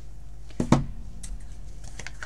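Clear acrylic stamp block being lifted and set down on a craft desk: a sharp double knock a little over half a second in, then a few faint ticks.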